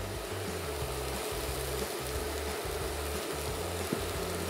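Butternut squash cubes frying in butter and oil in a pan, sizzling steadily.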